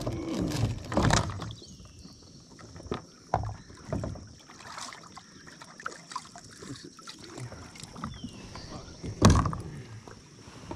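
Irregular knocks and bumps of a person shifting their body and legs in a plastic sit-on-top kayak, with light water movement against the hull; a few bumps come in the first second, more a few seconds in, and the loudest near the end.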